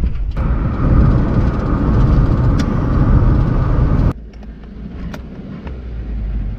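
Car driving on a dirt road, heard from inside the cabin: a loud, steady rumble of tyres and engine. About four seconds in it cuts off abruptly to a quieter, steady cabin rumble with a few light clicks.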